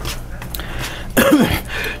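A man coughs once, a little over a second in, a loud burst that trails off in a falling voiced tail.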